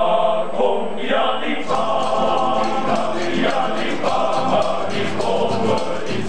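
Male choir singing an Afrikaans folk song, a deeper voice part entering and the singers clapping their hands in a steady rhythm from about two seconds in.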